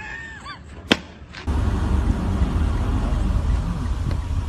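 A violin note held briefly and sliding away, and a sharp knock just under a second in. About one and a half seconds in, a steady low rumble of wind and road noise from a moving car takes over and is the loudest sound.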